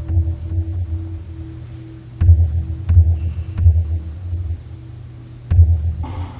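A large temple drum struck at uneven intervals, each stroke a deep boom, with three strokes in quick succession about two seconds in. Under it a large bell's hum keeps ringing with a slow, even pulse.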